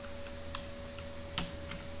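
Computer keyboard keys tapped, about four separate clicks with two of them louder, over a faint steady electrical hum with a thin high whine.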